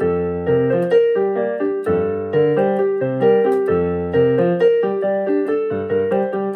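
Portable electronic keyboard played on a piano voice, solo: a repeating figure of notes in the middle register over a low bass note struck about every two seconds.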